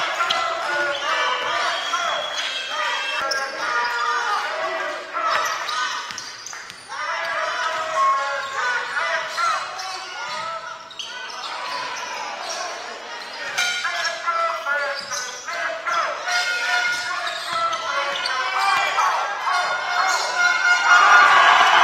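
Live basketball game sound in a large indoor hall: a ball bouncing on the hardwood court amid voices echoing in the hall.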